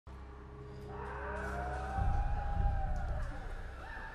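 Low, sustained droning tones from the film's soundtrack. A slow tone rises and then falls over them, and the low end swells louder about halfway through.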